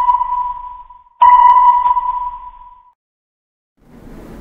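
Sonar ping sound effect: a clear ringing tone that fades away, the tail of one ping dying out, then a second ping starting sharply about a second in and fading out over nearly two seconds.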